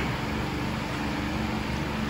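Steady low hum with a faint hiss and no distinct events.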